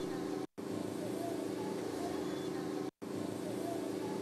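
Street sound from a phone recording: a motor vehicle engine running steadily, with faint voices. The audio drops out completely twice, briefly.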